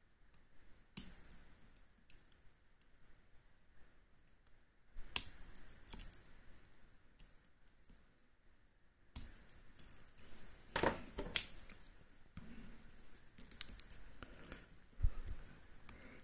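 Lock pick and tension wrench working inside an M&C Color (Oxloc-branded) high-security cylinder: faint, irregular metal clicks and light scraping as the pins and sliders are probed and set, with a few louder clicks spread through.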